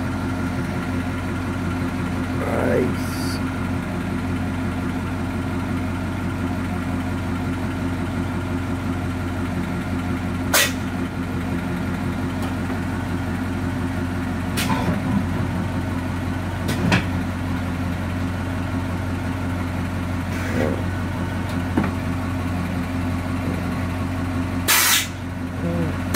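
Steady low mechanical hum from a 1959 Ford Galaxie on air suspension, with a few sharp clicks through the middle. Near the end come two short, loud bursts of hissing air, typical of the airbag valves letting air in or out.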